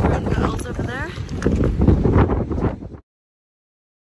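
Wind buffeting the phone microphone, with some voice sounds mixed in. The sound cuts off suddenly to silence about three seconds in.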